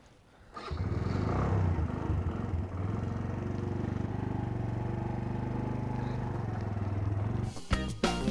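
Motorcycle engine starting about half a second in and running steadily, with an even pulsing note. Music with drums comes in near the end.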